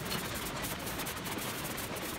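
Steady mechanical running noise of recycling-plant conveyor machinery.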